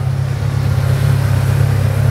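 Sand car's GM Ecotec 2.2-litre four-cylinder engine idling steadily: an even, low running note.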